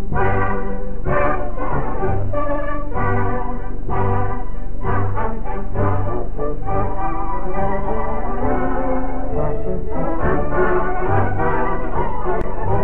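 Brass band playing a lively tune: trumpets carry the melody over tubas that sound a regular bass note on the beat. The sound is dull, with no high end, as on an old 1930s film soundtrack.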